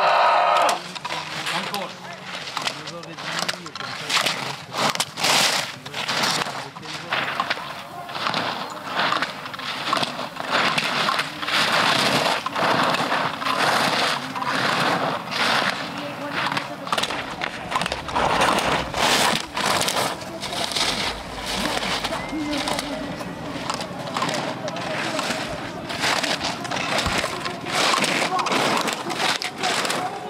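Slalom skis carving and scraping on hard, icy snow in a quick run of sharp turns, with gate poles struck and knocked aside as the racer clears them.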